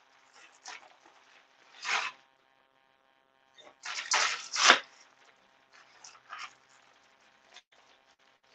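Plastic poly bags crinkling and rustling as packaged scrub tops are handled and pulled open, in a few short bursts, the loudest about four to five seconds in.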